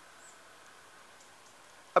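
Quiet outdoor background: a faint steady hiss with no distinct event, and one brief, faint high chirp about a quarter second in.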